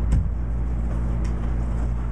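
Steady low room hum with a single sharp click just after the start.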